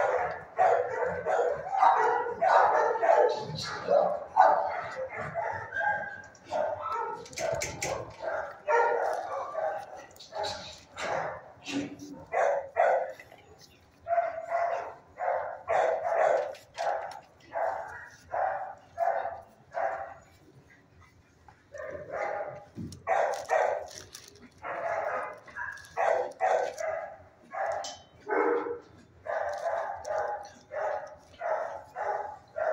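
Shelter dogs barking over and over in the kennels, at first many barks overlapping, then short barks about one or two a second. There is a quiet gap of a couple of seconds a little past the middle.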